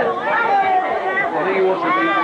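Indistinct conversation: several people talking over one another, with no other distinct sound.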